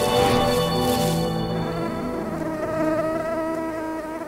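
Mosquito buzzing as a wavering high whine. A whooshing rush fades out over the first second and a half.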